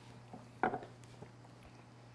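Near-quiet room with a steady low hum and a few soft, brief sounds as neat whiskey is sipped from Glencairn tasting glasses, the clearest a little over half a second in.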